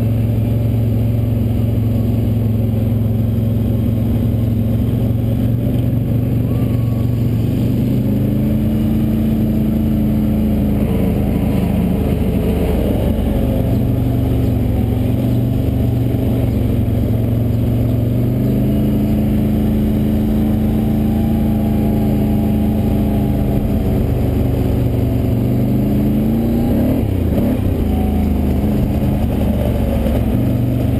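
Quad (ATV) engine heard from on board, running steadily at low speed, its note stepping up slightly a few times with the throttle and rising briefly near the end.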